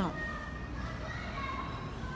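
Faint distant voices over a low steady hum during a pause in the close talking.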